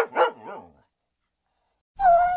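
A dog barking three times in quick succession, each bark fainter than the one before, followed by about a second of silence.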